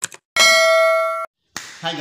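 A short click, then a bright bell ding held for about a second that cuts off sharply: a subscribe-click and notification-bell sound effect.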